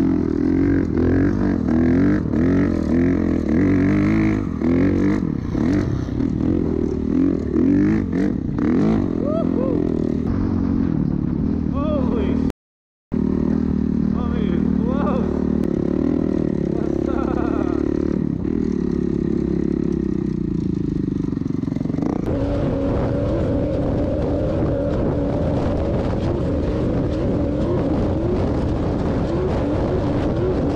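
Off-road vehicle engine running and revving, its pitch repeatedly rising and falling in quick sweeps. The sound cuts out briefly near the middle. From about two-thirds of the way in, a steadier, higher engine note takes over.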